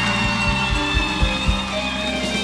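Live band playing an instrumental passage of a Gulf Arabic pop song: held chords over several low drum hits in the first second and a half.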